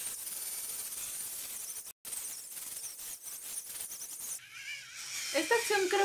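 Battery-powered facial cleansing brush, its spinning sponge head rubbing over the cheek with cleansing cream: a steady high hiss that cuts out for an instant about two seconds in and stops a little after four seconds.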